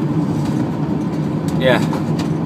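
Vehicle engine running, a steady low drone heard from inside the van's cab.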